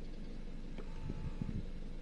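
Faint brief whine of a BMW's electric side-mirror motor about a second in, as the mirror tilts, over a steady low rumble in the car's cabin.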